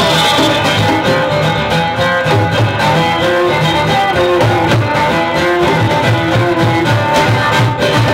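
Live acoustic band: a bowed viola carries a sustained, sliding melody over two strummed steel-string acoustic guitars, with Javanese kendang drums keeping a steady rhythm underneath.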